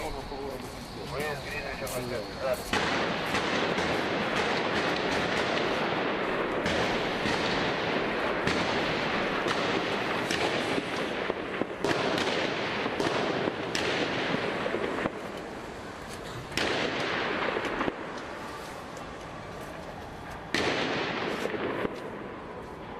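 Loud, chaotic clash noise: voices at first, then from about three seconds a dense din packed with many sharp pops and bangs that eases and flares up again a couple of times.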